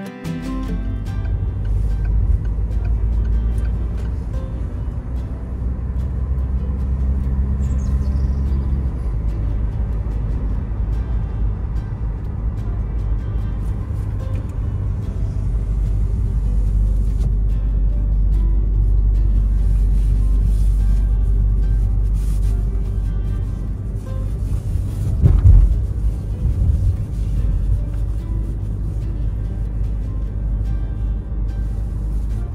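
Car driving on the road, heard from inside the cabin: a steady low rumble of road and engine noise, with a louder surge about 25 seconds in.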